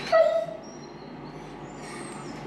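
A dog gives one short, high whine right at the start, slightly falling in pitch.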